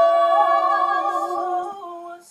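A small a cappella vocal group holding a long sustained chord that fades away near the end.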